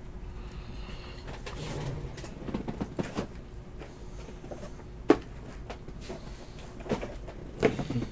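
Quiet handling noise of sealed trading-card boxes being picked up and gathered on a table: a few soft knocks and clicks, with one sharper knock about five seconds in.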